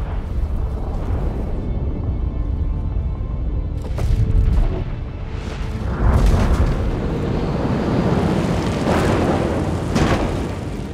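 Film score over a deep, continuous rumble of explosions as the arena's dome roof breaks apart, with the loudest booms about four and six seconds in.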